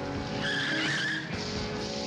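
A car's tyres squeal briefly, from about half a second to just past a second in, with the car running, over background music with long held notes.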